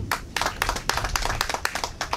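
Audience clapping: a quick, dense patter of many hand claps that dies away near the end.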